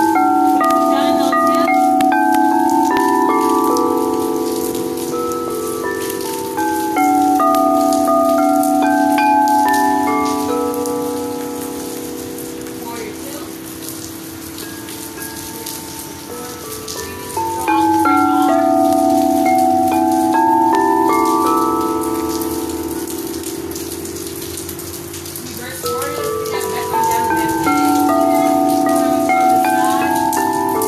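Crystal singing bowls sounded one after another in runs, each steady tone ringing on and overlapping the others into a sustained chord. A new run starts about every 8 to 10 seconds, with rain hissing steadily underneath.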